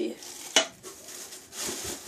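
Hair-product containers being rummaged through in a box: one sharp knock about half a second in, then a rustle near the end.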